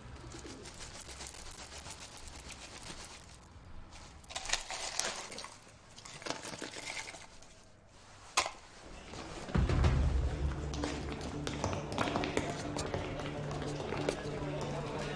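Bird calls over a quiet background, with scattered clicks and one sharp knock; a louder low steady drone comes in about ten seconds in and holds.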